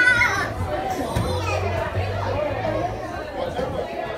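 Children playing and indistinct chatter of children and adults in a large indoor play room, with music in the background; a child's high-pitched voice rings out right at the start.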